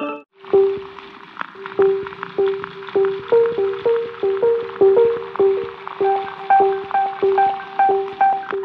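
A lo-fi cassette-sampled preset from the Tapes.01 Kontakt instrument playing: a single pitched keyboard-like note repeated about twice a second, with a few higher notes joining it, over a steady tape hiss. It starts just after a short break at the beginning.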